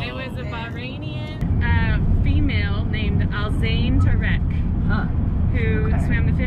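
Steady low rumble of road and engine noise inside a moving van's cabin, getting louder about a second and a half in, under people's voices.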